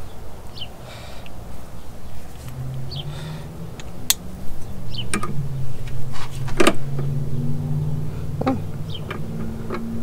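A few sharp metallic strikes and clinks as a drive-shaft U-joint clamped in a bench vise is hammered to free a stuck bearing cap, the loudest strike about two-thirds of the way in. Under them a steady low motor hum starts a couple of seconds in.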